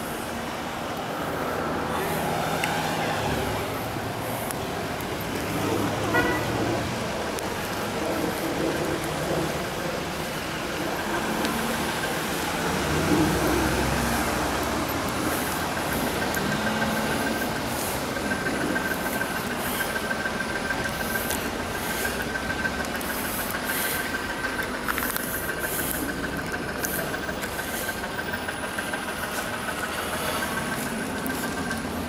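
Street ambience in a snowstorm: vehicle traffic and engines going by on a snowy city street, with a steady high tone setting in about halfway through. Footsteps crunch in the snow.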